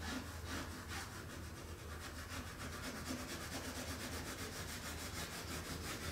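Colored pencil scratching across toned drawing paper in quick, even back-and-forth shading strokes, several a second.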